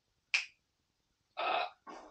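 A single sharp click about a third of a second in, followed by a short breathy rush of air shortly before the end.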